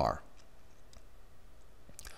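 A pause in voice-over narration: the last word trails off just at the start, then faint steady background noise with a few light clicks.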